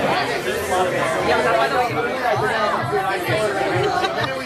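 Several people talking over one another: lively group chatter.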